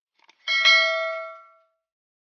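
A couple of faint clicks, then a single bright bell ding about half a second in that rings on and fades away over about a second: a notification-bell sound effect.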